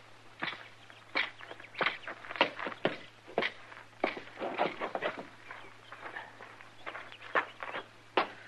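Radio-drama footsteps: someone walking at an even pace, a sharp knock about every half second, over a steady low hum from the old recording.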